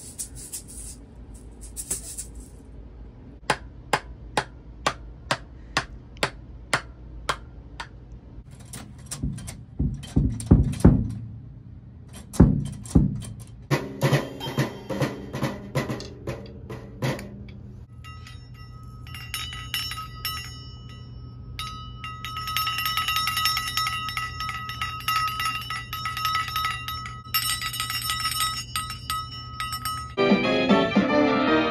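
A small child playing drums and percussion: a run of evenly spaced ticks about twice a second, then loud, uneven hits on a drum kit with sticks, then steady bell-like ringing tones through the last ten seconds or so.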